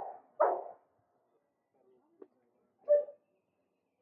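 Bullmastiff barking: two barks in quick succession at the start and a third about three seconds in.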